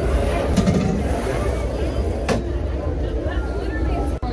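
Indistinct voices in the background over a steady low rumble, with one sharp click a little past halfway.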